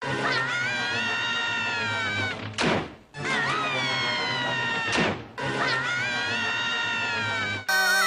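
Cartoon characters screaming: one long, high yell held on a steady pitch, repeated three times, each ending in a quick falling sweep. Near the end it cuts to a louder group of cartoon voices yelling.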